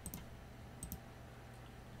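Two faint computer mouse clicks, a little under a second apart.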